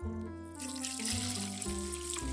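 Water poured in a stream onto fish in a metal bowl, a splashing rush that starts about half a second in, over background music with a plain melody of held notes.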